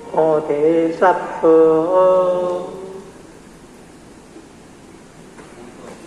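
A voice chanting scripture in Southern Min (Taiwanese Hokkien), drawn-out syllables on held pitches, stopping about three seconds in; after that only low room noise.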